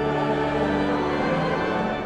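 A hymn sung by a congregation and choir with organ accompaniment, a new phrase beginning on a held chord.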